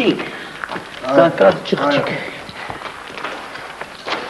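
A man speaking in a couple of short phrases, with quieter background noise and faint scuffs in the pauses.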